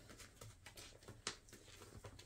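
Near silence, with faint rustling and a few light ticks as fabric scraps are handled in a clear plastic zipper bag.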